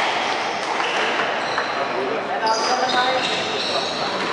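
Squash shoes squeaking on a wooden court floor and a few short knocks of the ball and feet, in an echoing hall, with indistinct voices in the background. The squeaks come thickest in the second half.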